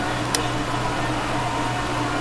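Steady low hum and hiss of room background noise, with one short click about a third of a second in.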